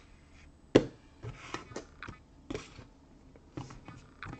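Hard plastic trading-card holders clacking on a table as cards are set up on display stands: one sharp knock about three-quarters of a second in, then several lighter clicks and rustles.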